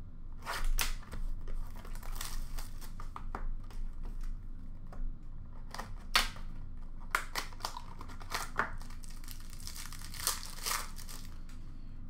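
Hockey card pack wrappers being torn open and crinkled by hand, with irregular crackles and short rips throughout.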